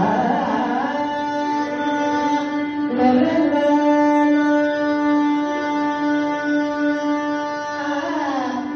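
Carnatic music in raga Mohanam, unaccompanied by percussion: a violin sliding through a phrase in the first second, then holding long notes, moving to a new note about three seconds in, over a steady drone.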